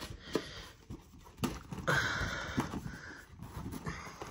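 Stiff 3D-printed plastic insert being worked down into a cardboard game box that it fits tightly: scattered light clicks and knocks, with a short rubbing scrape about two seconds in.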